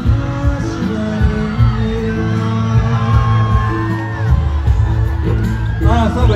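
Amplified pop music with a steady bass line and a male singer holding long, gliding notes into a microphone over a PA. Near the end, whoops rise from the crowd.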